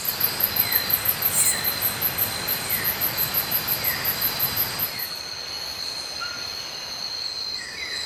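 Night-time jungle insect chorus of crickets and katydids: a rapid, very high pulsed chirp about six times a second that stops about five seconds in, over steady high trills, with faint short falling notes repeating lower down.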